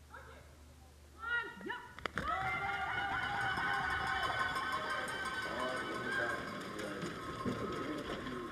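Bobsleigh start: a couple of shouted calls, a sharp knock about two seconds in as the two-woman sled is pushed off, then sustained loud shouting and cheering while it is pushed down the start ramp and the athletes jump in.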